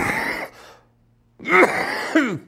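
A man coughing into his fist: one sharp cough right at the start, then a longer cough about one and a half seconds in.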